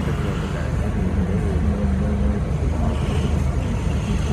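Street traffic noise: a steady low rumble of a motor-vehicle engine running close by.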